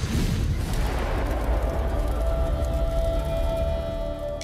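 Cinematic intro sound design: a deep boom hits at the start over a swell, then a sustained low rumble carries on, with a held tone coming in about halfway.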